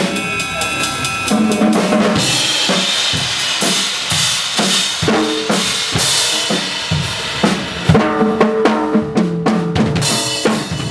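Acoustic drum kit being played: kick, snare and tom strikes with cymbals, the cymbal wash thickening about two seconds in and a run of pitched tom hits near the end.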